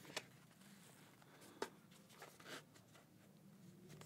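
Near silence with a few faint clicks and rustles of an HTC Vive Focus 3 VR headset and its head strap being handled and adjusted on the head.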